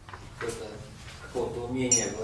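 A man's voice speaking in short phrases, with a brief sharp high-pitched sound near the end.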